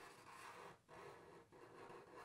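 Near silence, with faint scratching of a Sharpie marker drawing a circle on paper.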